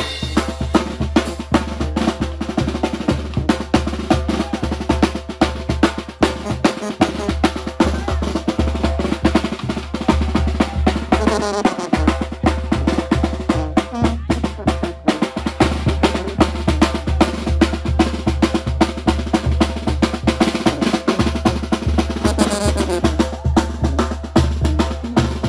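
Mexican banda drum section playing a steady, driving beat: a snare drum with rolls, and a tambora bass drum with a cymbal mounted on top, struck together.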